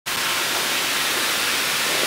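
Steady, even hiss with no tone in it, starting abruptly at the very start.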